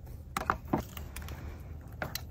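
A few light clicks and taps of a plastic engine-bay cover and trim being handled as it comes off the battery, the clearest about half a second in and again just after.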